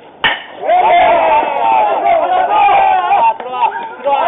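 A bat hits a pitched baseball with one sharp crack about a quarter second in, followed by several voices shouting loudly.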